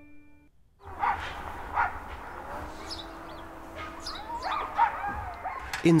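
Greenland sled dogs barking and yelping together, starting about a second in after a brief hush.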